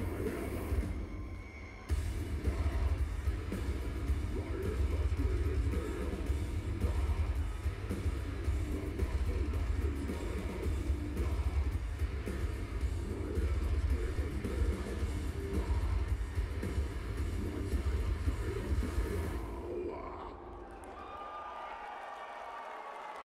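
Live metal band playing at full volume through a concert PA, recorded from within the crowd, with a heavy, booming low end. The music dips briefly about two seconds in, then runs on until it falls away near the end, leaving quieter crowd noise.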